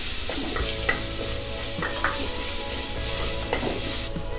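Ginger-garlic paste sizzling in hot oil in an aluminium pressure cooker as it is stirred, with a steady hiss and now and then a short scrape against the pot's base.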